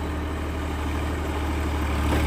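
Tractor engine running steadily with a deep, even hum, pulling a PTO-driven sugarcane weeder that works and ridges the soil in one pass.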